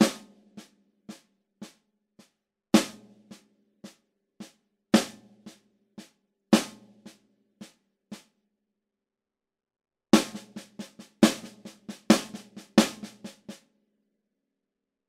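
Snare drum played with sticks: a bar of two paradiddles in sixteen even strokes at about two a second, quiet strokes with four loud accents moved off the expected beats (on the 1st, 6th, 10th and 13th notes). After a short pause the same accented pattern is played faster.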